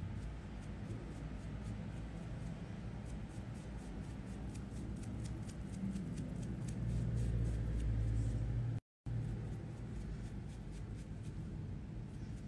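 Makeup brushes stroking across skin, a run of soft, quick scratchy strokes, over a steady low hum. The sound drops out for a moment about three-quarters of the way through.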